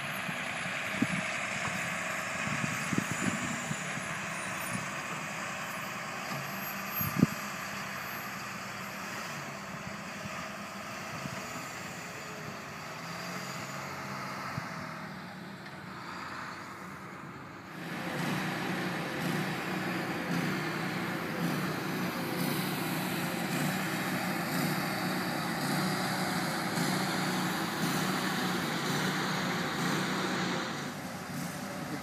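Heavy diesel construction machinery running steadily, a low engine hum that grows louder about two-thirds of the way through. A single sharp knock sounds early on.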